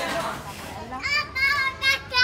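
Young children playing, with a child's high-pitched voice calling out about a second in.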